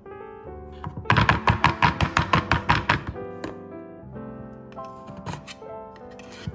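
A metal loaf tin knocked rapidly against a wooden cutting board, about a dozen quick knocks over two seconds, to loosen a baked bread that is stuck in the tin. Background music plays throughout.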